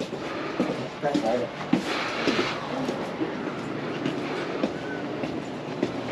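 Footsteps and irregular clattering and rattling while walking across a tiled floor, with a short hiss about two seconds in and faint indistinct voices in the background.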